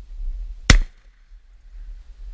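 A single sharp knock, about two-thirds of a second in, with a brief ring after it, over a low rumble on the microphone.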